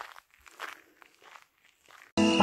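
Faint footsteps on a dirt track, about one step every two-thirds of a second.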